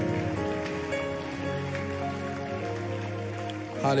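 A congregation clapping in steady applause over background music of long held chords.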